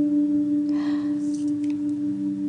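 Background music: one plucked-string note held and ringing out between notes, with a faint rustle of paper, the greeting card being opened, about a second in.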